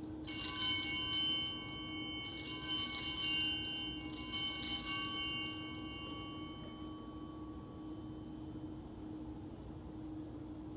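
Altar bells rung at the elevation of the chalice during the consecration: two bursts of bright, many-toned ringing, the second about two seconds after the first, each left to ring out and fade over several seconds.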